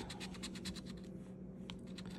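A coin scraping the latex coating off a paper scratch-off lottery ticket, in quick short strokes about eight to ten a second, with a brief pause a little past the middle.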